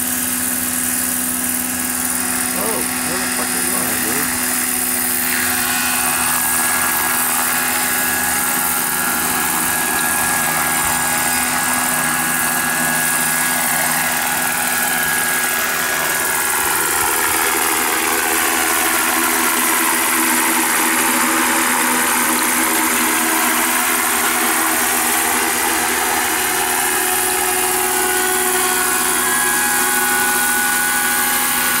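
Radio-controlled scale NH90 model helicopter running: a steady whine from its motor and drive with the rotor noise, as it goes from sitting on the pad to flying. About halfway through the pitch dips and rises as it flies past.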